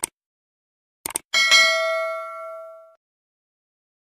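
Subscribe-button sound effect: a mouse click, then two quick clicks about a second in, followed by a bell ding that rings on with several overtones and fades away over about a second and a half.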